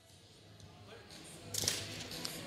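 A competition robot's pneumatic climber pistons actuate: a short burst of air and mechanism noise about one and a half seconds in as the linkage swings the climbing arm up.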